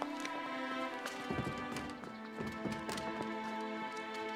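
Dramatic film score with long held string notes over scattered knocks and heavy thuds of scuffling footsteps. The thuds cluster between about one and three seconds in.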